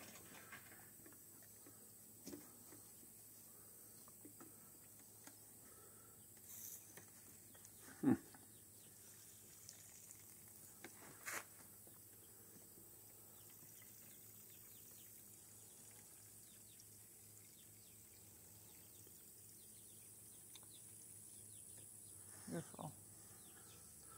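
Near silence with a faint outdoor background, broken by a few brief, faint sounds: one about eight seconds in, a click a few seconds later, and another near the end.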